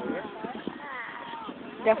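Distant shouts and calls from soccer players and spectators carry across an open field, with faint scattered thumps underneath. A close, louder voice starts right at the end.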